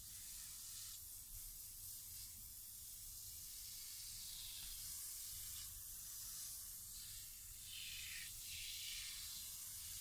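Aerosol can of Tuff Stuff foam upholstery cleaner spraying onto a fabric seat cover: a soft hiss that swells in a few bursts as the can is swept across the seat.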